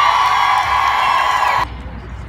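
Rally crowd cheering and whooping, many high voices held together in a sustained cry, cut off suddenly about one and a half seconds in.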